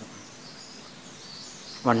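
Steady low background noise with faint, high chirping over it; a man's voice begins near the end.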